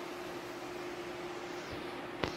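Steady hiss of room noise with a faint, steady hum under it.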